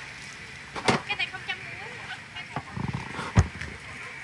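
Clear plastic bag crinkling and rustling as fruit pieces are handled into it on a metal tray, with two sharp knocks, the louder one about three and a half seconds in.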